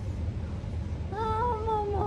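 A single drawn-out, high-pitched vocal call begins about a second in and is held, wavering slightly, over a low steady room hum.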